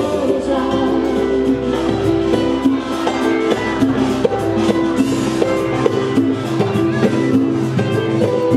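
Live pop music with female singing over a steady drum beat and backing instruments.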